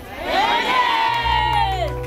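A crowd of many voices cheering together in one long shout that rises, holds and falls away shortly before the end. A low steady hum comes in about halfway.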